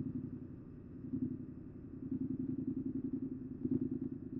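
Yamaha MT-07's parallel-twin engine running at about idle speed with no throttle, pulling the bike forward at walking pace in first gear on the clutch's friction point. Its low, even beat swells slightly a second in and again near the end.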